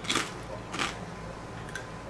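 A person chewing a crisp cracker with the mouth closed: two short, soft noisy sounds, one right at the start and one just under a second in.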